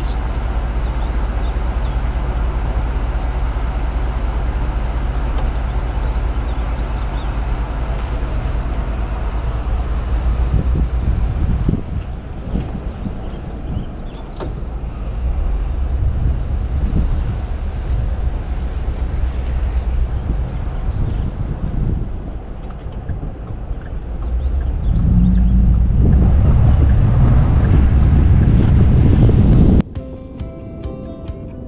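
A car running and driving, with wind rumbling on the microphone; it grows louder near the end.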